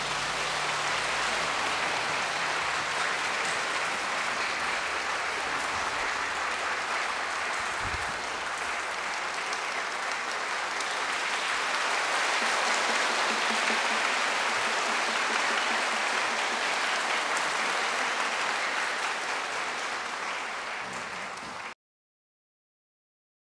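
A concert-hall audience applauding steadily after a symphony orchestra's final chord, whose last ring dies away in the first second. The applause swells a little midway, then cuts off abruptly just before the end.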